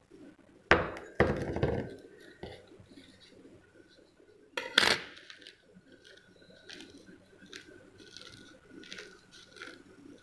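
Three sharp clinks and knocks of small hard objects set down on a wooden bench in the first five seconds. After them comes soft rubbing as palms press a sheet of filter paper flat over wet crystals to blot them dry.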